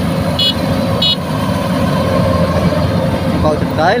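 Rice combine harvester running steadily under load while it cuts ripe rice, a continuous low engine rumble, with a few short high-pitched beeps in the first second or so.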